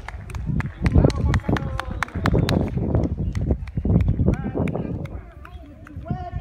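Footsteps of someone walking across stone paving, heard as many sharp clicks over a low rumble on the microphone, with voices of people nearby.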